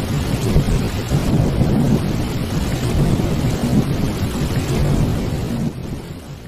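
A loud, steady rumbling sound effect, thunder-like noise heaviest in the low range, dying away near the end.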